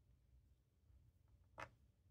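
Near silence: quiet room tone with a single faint click about one and a half seconds in.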